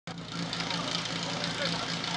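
A steady low hum under faint outdoor background noise.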